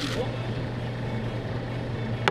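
A steady low hum under faint background noise, with no distinct event.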